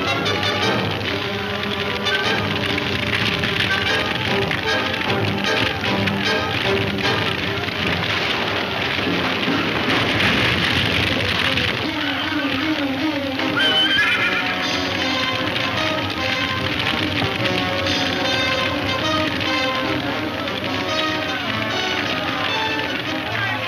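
Horses whinnying and hooves clattering, frightened by a barn fire, under an orchestral film score. A rising whinny stands out about two-thirds of the way through.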